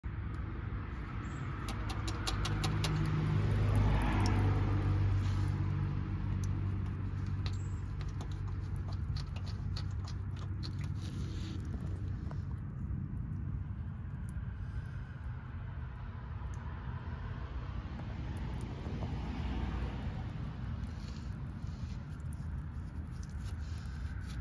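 Water running out of a Mazda MX-5 Miata's freshly unplugged sill rail drains onto pavement, with short clicks as a wire is poked into the drain holes, over a steady low rumble that swells about four seconds in. The water had been trapped in the sill by the plugged drains.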